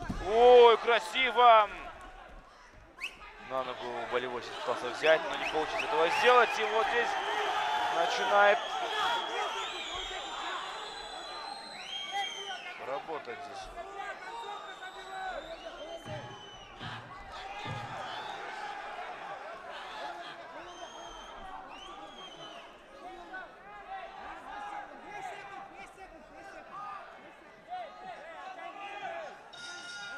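Several men shouting over one another, spectators and corners calling out during a grappling exchange in a mixed martial arts bout. The shouting is loudest in the first two seconds and again from about four to nine seconds in, and a few dull thumps sound through it.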